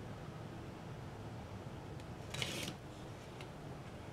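Quiet room tone, with one brief scratchy rustle about two and a half seconds in as a utility knife slits the plastic wrap off a small box of cards.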